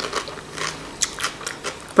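A person chewing a mouthful of food close to the microphone, with a string of short, irregular mouth clicks.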